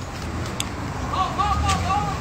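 Low rumble of vehicle engines and traffic in a parking lot. About a second in, a repeating warbling chirp starts, about three a second.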